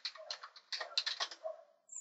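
Typing on a computer keyboard: a quick run of keystrokes spelling out a word, stopping about a second and a half in.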